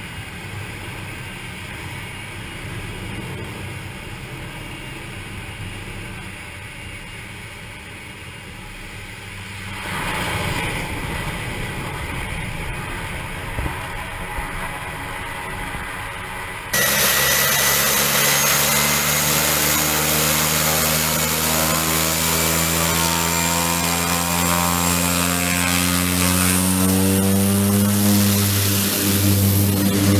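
A small single-engine aircraft's engine, first as a steady, muffled low drone heard from the cockpit during approach and landing on a grass strip, swelling about ten seconds in. About seventeen seconds in the sound switches abruptly to a much louder engine with a high whine, its pitch rising steadily as it powers up.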